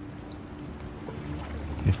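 Steady low rumble of a ship's ambience below deck, with a faint steady hum, under a pause in the dialogue; a man's voice begins a word near the end.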